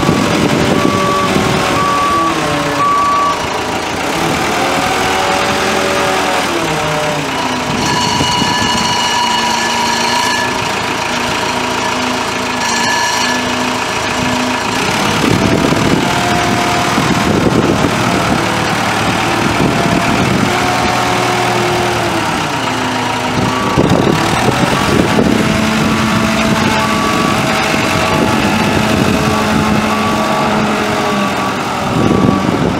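Telehandler's Cummins B3.9 four-cylinder diesel running under way, its pitch rising and falling as it drives and manoeuvres. A backup alarm beeps steadily at the start and again over the last few seconds while it reverses.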